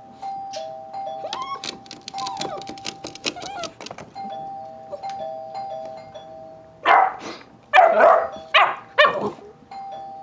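A two-note ding-dong doorbell chime rung over and over, with a pit bull answering it: short whining cries in the first half, then four loud barks about seven to nine seconds in.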